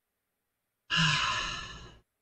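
A man sighing: a sudden breathy exhale about a second in, with a short voiced start, fading away over about a second.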